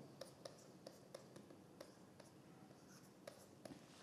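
Faint clicks of a stylus tapping and scratching on a writing tablet as handwriting goes on, scattered ticks over near silence with a gap of about a second and a half in the middle.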